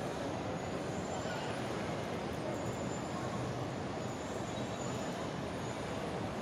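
Steady background noise of a large indoor shopping-mall atrium: an even hum and hubbub with no distinct event.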